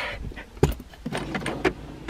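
A cabinet drawer full of makeup bottles and tubes being pulled open: a knock a little over half a second in, then a light clatter of the contents.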